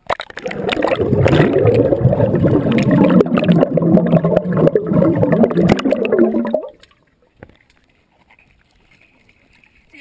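Pool water splashing and gurgling around a waterproof action-camera housing as it dips in and out of the water. The sound is loud and choppy, then cuts off suddenly about seven seconds in.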